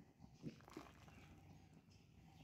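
Near silence: faint sounds of a wooden spoon stirring thick, boiling milk in a metal kadhai, with a soft tap about half a second in and a fainter one just after.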